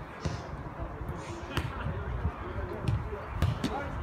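Footballs being kicked during a pre-match warm-up: several separate sharp thuds of boot on ball, the clearest about one and a half seconds in.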